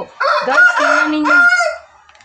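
A fowl's call: one loud, drawn-out, wavering cry lasting about a second and a half.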